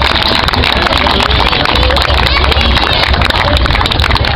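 Crowd applauding outdoors, a dense run of clapping with voices mixed in.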